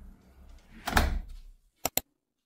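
A door with a lever handle being shut: one loud thud about a second in, then two short sharp clicks near the end.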